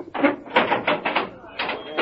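Indistinct voices that do not come through as words.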